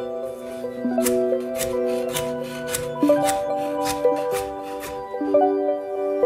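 Background music, with a kitchen knife dicing carrots on a wooden cutting board: crisp chops at about three a second that stop a little before the end.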